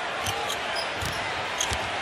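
A basketball dribbled on a hardwood court, several separate bounces over the steady noise of a large arena crowd.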